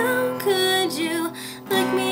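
A woman singing while she strums an acoustic guitar, with a short lull about a second and a half in before the voice and guitar come back in.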